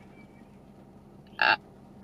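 A woman's single short "uh" about one and a half seconds in, over a quiet car cabin with a faint steady hum.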